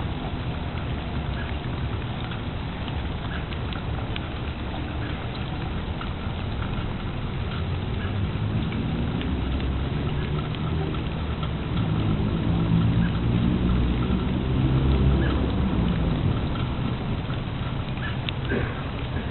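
Steady rain falling, a continuous patter with scattered drop ticks. A low, drawn-out rumble swells in the middle, loudest a little past halfway, and fades shortly before the end.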